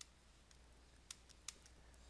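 Near silence with a few faint, sharp clicks, about three in two seconds: a stylus tapping on a tablet as the handwriting is drawn.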